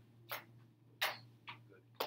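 Scattered short clicks and taps, three or four of them, the loudest about a second in, over a steady low hum in a quiet classroom while students work.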